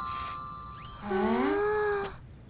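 Cartoon soundtrack: the tail of a chiming music cue fades out, and a short high whoosh follows. About a second in, a pitched sound glides upward and then holds steady for about a second before it cuts off.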